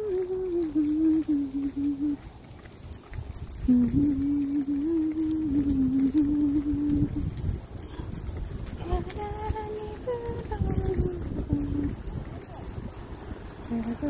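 A person humming a wordless tune in three phrases of held notes that step up and down, with a low rumble underneath.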